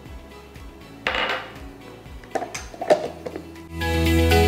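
Plastic handling sounds at a hand-blender chopper bowl: a short scraping rustle about a second in, then a few clicks and knocks as the blender's lid and motor head are fitted onto the bowl, the sharpest knock near the end. Background music comes in just before the end.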